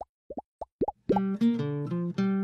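A quick run of short bubble-pop plops, each rising in pitch, then about a second in an acoustic guitar starts picking a tune.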